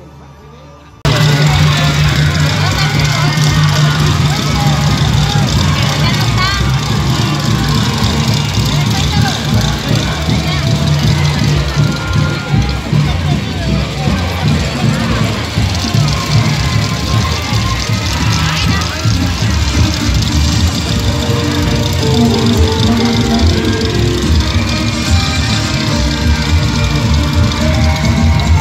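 Loud amplified music with a voice over it, played through a stage sound system, cutting in abruptly about a second in.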